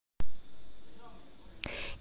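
A sharp click as the voice-over recording starts, fading into faint microphone hiss, then a short breath near the end, just before the narrator speaks.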